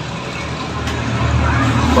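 Chalk scratching and tapping on a blackboard as a fraction is written, over a low rumble that swells in the second half.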